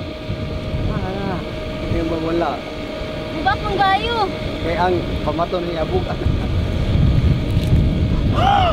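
A steady low mechanical drone with a constant hum runs throughout, with wind rumbling on the microphone that grows stronger near the end; faint voices talk over it.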